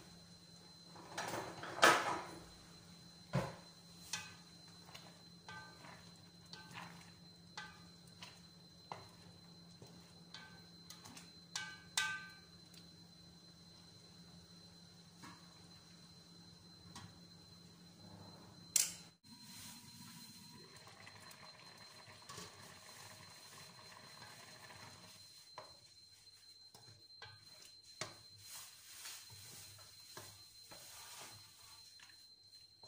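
Quiet background with scattered light clicks and knocks, the sharpest about two seconds in. A single sharp knock comes just before twenty seconds, after which the background changes.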